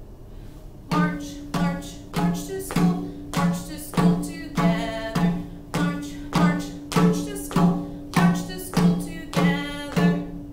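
Hand drum struck in a steady beat, about five strikes every three seconds, starting about a second in; each strike rings with a low pitched tone.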